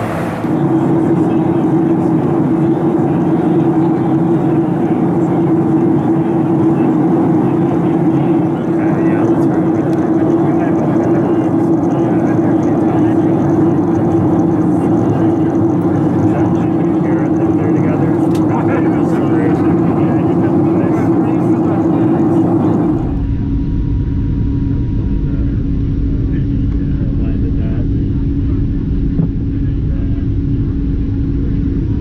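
Boeing 737-800 with CFM56 engines in flight, heard inside the cabin: a loud, steady mix of engine hum and airflow. About 23 seconds in it changes suddenly to a deeper rumble with a lower steady tone, as heard at the window beside the engine.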